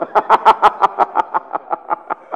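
A man laughing close to the microphone: a quick run of 'ha' pulses, about six or seven a second, growing weaker toward the end.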